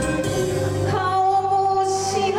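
A woman singing an enka song into a microphone over a karaoke backing track, holding a long note from about a second in.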